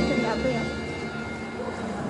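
Dinosaur film soundtrack through theatre speakers: the music dies away in the first second, leaving a low steady rumble with faint voices.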